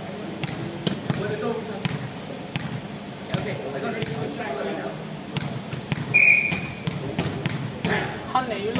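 A volleyball thudding on the floor and against hands at irregular intervals in a large sports hall, with players' voices murmuring underneath. A short high squeak about six seconds in is the loudest moment.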